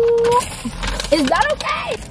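A woman's drawn-out cry of 'oh' that breaks off about half a second in, then laughing, shrieking exclamations with scattered clicks and rustling, her reaction to spilling a cup of Coke.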